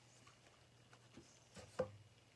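Mostly quiet: a low steady hum with a few faint taps as small paint cups are handled on the work table.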